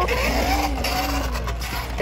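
Small plastic wheels of a child's three-wheeled kick scooter rolling quickly over a tiled floor: a steady rolling rumble with a faint wavering tone in it.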